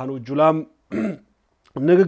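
A man speaking in Amharic. He breaks off after about half a second, with one brief sound in the pause, and starts talking again near the end.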